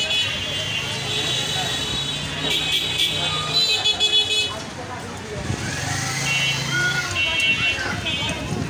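Busy street noise: voices and traffic, with vehicle horns sounding on and off. Bright high-pitched tones come and go throughout.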